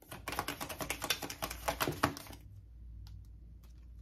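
A deck of tarot cards being shuffled by hand: a rapid run of card flicks for about two seconds, then a few faint ticks.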